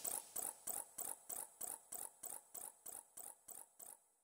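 General MIDI guitar fret-noise patch from an SC-55 soundfont playing a run of short squeaks, about three to four a second, that fade away steadily. The notes are panned to alternate sides to echo back and forth: a ping-pong delay written into the MIDI by hand.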